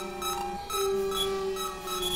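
Electronic synthesizer music: several held low tones overlapping and shifting between pitches, with short high blips and clicks repeating over them.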